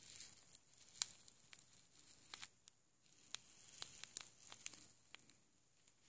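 Small plastic zip-lock bag of glitter handled in the fingers, giving faint, scattered crinkles and crackles.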